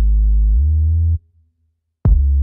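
Loud, deep synthesizer bass tone that steps up in pitch about half a second in and cuts off suddenly just after a second. After a short silence a second one starts right at the end.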